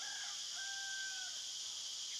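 Steady high-pitched chirring of crickets, with a faint distant rooster crow holding one pitch for about a second around the middle.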